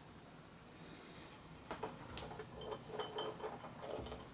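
A few faint clicks and clinks of a glass laboratory beaker being handled and set on the top plate of a magnetic stirrer.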